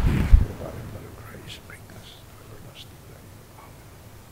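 A man's voice at the microphone: a short breathy thump on the microphone about a third of a second in, then faint whispering with soft hissy s-sounds. This fits the priest quietly saying his private prayer before receiving communion.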